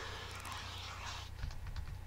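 Faint computer keyboard keys tapped in quick succession, starting a little past halfway through, over a low steady hum. A shortcut is being pressed over and over to undo paint strokes.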